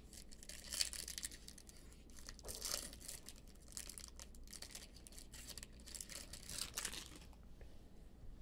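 A trading card pack's wrapper being torn open and crinkled by hand, in faint, scattered rustles and tears.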